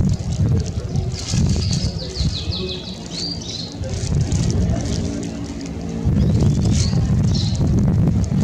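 Small birds chirping, with a quick run of falling chirps early on and a few more near the end, over a loud low rumble of wind on the microphone.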